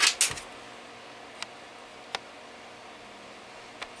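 Quiet room tone with a faint steady hiss, broken by three small, sharp clicks spread across the few seconds. A brief hiss comes right at the start.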